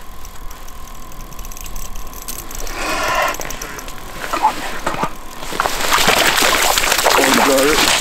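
Fabric of a jacket rubbing and brushing against the camera microphone, a loud rustling hiss that starts about halfway through and runs on to the end.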